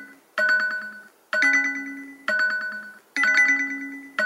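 Background music: a short pitched phrase that repeats about once a second, each time starting sharply and then fading.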